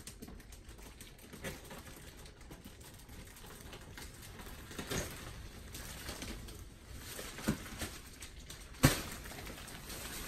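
Plastic wrap on a roll-packed mattress rustling as it is slit open with a box cutter and pulled back, with a few sharp ticks and knocks, the loudest a little before the end.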